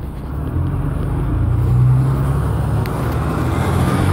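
Diesel bus engine running close by in street traffic. Its low hum grows louder about half a second in and stays strong, with road noise over it.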